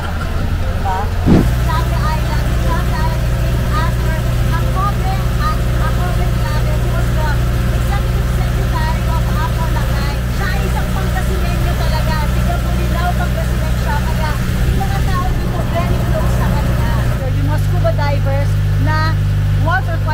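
A tour boat's engine running at a steady cruise, a loud low drone under talk. Its pitch shifts abruptly about a second in and again near the end.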